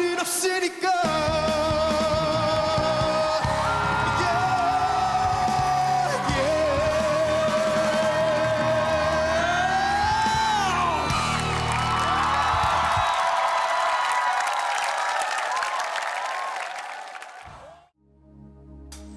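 A male singer holds a long high note with vibrato over a live band at the climax of a ballad, with whoops and shouts from the audience. The band fades out and the music dies away to near silence near the end.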